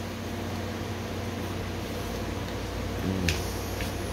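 Steady low hum with an even hiss, a fan-like appliance noise running throughout.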